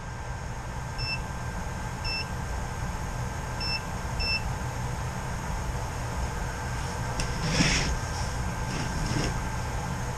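Four short, identical electronic beeps from a handheld digital multimeter, the last two close together, over a steady background hum. A brief rustle of handling comes near the end.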